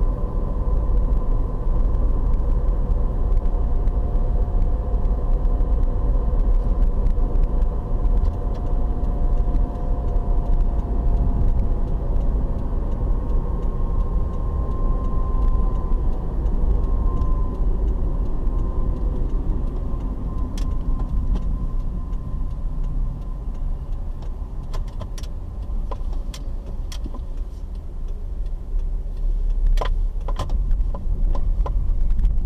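Car driving, heard from inside the cabin: a steady low rumble of engine and road noise with a faint drifting whine, easing off a little as the car slows near the end. A few sharp clicks in the last ten seconds.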